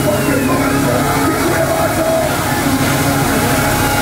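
Death metal band playing live at full volume: heavily distorted electric guitars holding long sustained notes over a dense wall of sound.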